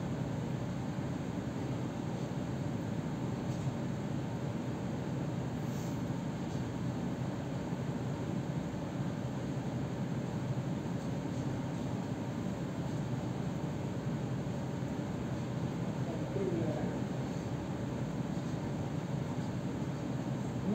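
Steady low hum of room noise in a meeting hall, with no one speaking. A faint voice-like murmur comes about sixteen seconds in.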